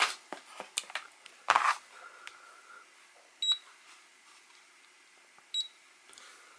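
A few light clicks and knocks of handling in the first two seconds, then two short high beeps about two seconds apart from a Diatone digital pocket scale as its buttons are pressed, switching it on and zeroing it.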